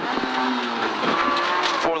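Rally car engine running hard at high revs, heard from inside the cabin, with a short spoken pace-note call at the end.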